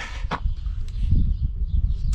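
Low, irregular rumble of wind on the microphone, with a few short light clicks as a chainsaw is handled; the saw is not running.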